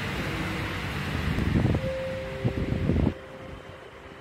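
Outdoor street ambience with wind buffeting the microphone in low rumbling gusts, the strongest about two and three seconds in. The noise drops off abruptly just after three seconds. Two faint steady tones sound underneath in the second half.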